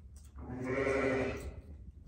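A lamb bleating once, a single call lasting about a second.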